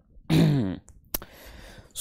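A man clears his throat once with a short voiced sound that falls in pitch. A sharp click follows about a second in.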